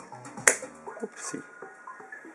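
A 1:24 Maisto Pro Rodz die-cast model car's hood closed by hand: one sharp click about half a second in, over background music.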